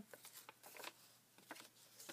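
Near silence with a few faint rustles and light taps of paper journal pages being handled and turned.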